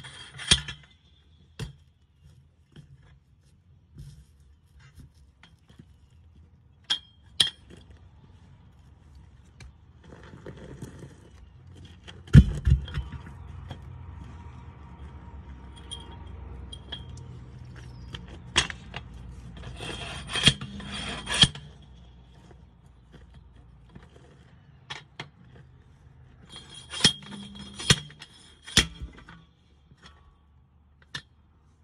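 Steel bar of a Vevor manual tire-changing tool knocking and scraping against a steel truck wheel as the tyre bead is worked. The sharp metallic clanks come at irregular intervals, the loudest about twelve seconds in, with a quick cluster around twenty seconds and another near the end.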